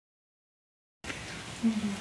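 Silence, then room tone cuts in abruptly about halfway through, and near the end a person's voice begins a short word, the start of an "OK".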